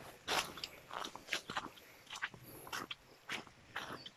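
Footsteps crunching and rustling through dry leaves and undergrowth: an irregular run of short crunches, several a second.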